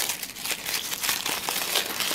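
A crinkly wrapper being pulled open by hand around a miniature toy jar, with a continuous irregular crackling rustle.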